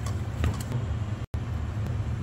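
Steady low background hum, with a faint tap of hands against a steel mixing bowl about a quarter of the way in. The sound cuts out for an instant just past the middle.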